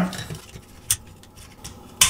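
Small plastic parts of a hair dryer being handled and pulled out of its handle: one sharp click about a second in, and a couple of faint ticks near the end.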